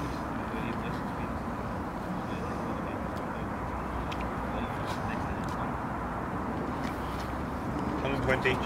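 Steady outdoor background rumble with a few faint clicks.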